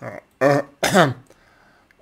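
A man clearing his throat in two short bursts about half a second apart, the second louder.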